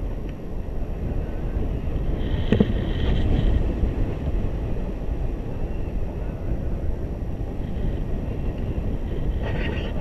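Wind buffeting the microphone of a camera carried through the air on a tandem paraglider in flight, a steady low rush, with one short knock about two and a half seconds in.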